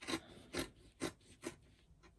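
Scissors snipping through folded printed fabric along a paper pattern: about four short cuts, roughly half a second apart.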